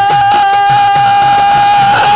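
Live Bengali folk music: one long held note, steady in pitch, over a regular drum beat.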